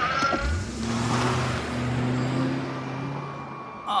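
An old pickup truck's engine pulling away and driving off, with a rising rev about half a second in, under a low held music score.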